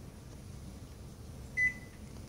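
A single short, high electronic beep from a Samsung microwave's keypad as a button is pressed, about one and a half seconds in, over a faint low room hum.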